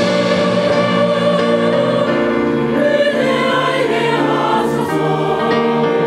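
Church choir singing sustained chords with a small orchestra accompanying, led by a conductor.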